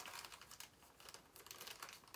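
Faint rustling and light, irregular clicking of small plastic zip-lock bags of square diamond-painting drills being handled and rummaged through.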